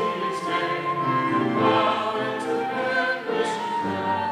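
A group of voices singing a sacred song together, with long held notes.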